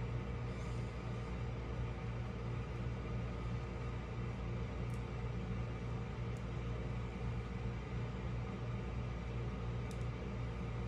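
A steady low mechanical hum, with a few faint ticks about halfway through and near the end.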